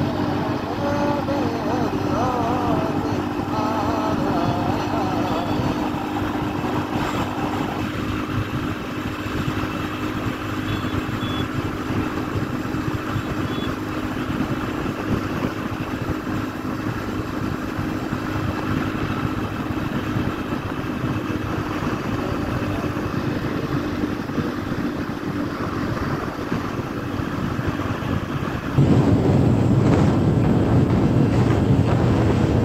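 Motorcycle engine running steadily at road speed, with wind and road noise. Near the end the wind on the microphone suddenly gets louder.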